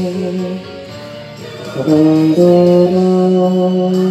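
Euphonium playing a slow melody over a recorded accompaniment. A held note ends within the first second, leaving only the quieter backing for about a second. The euphonium comes back in just before halfway with a new phrase of long held notes.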